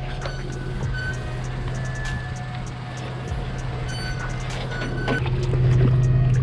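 SUV engine running at low revs with a steady low hum while backing a boat trailer down a launch ramp, growing louder about five seconds in.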